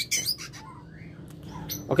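White-rumped shama (murai batu) giving a quick cluster of sharp, high chirps right at the start, then a few faint ticks.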